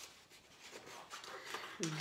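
Faint rustling of paper being handled, with a few soft ticks from the sheet and scissors.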